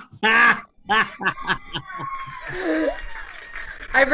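People laughing: a loud burst of laughter, then a quick run of short "ha-ha" pulses, with a long held high vocal note running under it.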